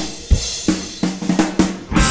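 Drum kit playing alone in a break in a live rock song, several separate snare and kick drum hits with the guitars and bass stopped. The full band comes back in right at the end.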